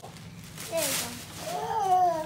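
A short, high-pitched vocal sound with a bending pitch rises near the end, over faint rustling of gift-bag tissue paper.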